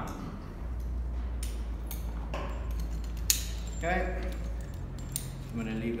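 Steel carabiners and rope-access hardware on a climbing harness clinking and clicking as they are handled and unclipped, with a handful of separate sharp clicks, the sharpest a little past the middle.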